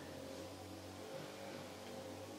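Faint steady low hum of room tone, with no distinct sound from the lipstick being applied.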